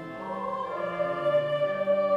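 A church choir singing held chords that swell louder about a second in.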